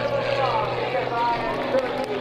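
Voices talking over the drone of a small aerobatic biplane's propeller engine. The low engine drone drops away at the start.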